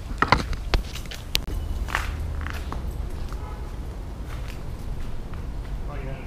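Handling noise as the camera is carried and set down: a few sharp clicks and knocks in the first two seconds, then a steady low rumble with faint rustling.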